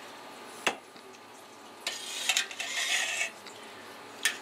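Slotted spoon stirring citric acid into milk in a stainless steel pot: one sharp knock of the spoon against the pot under a second in, then swishing and sloshing of the milk for about a second and a half in the second half.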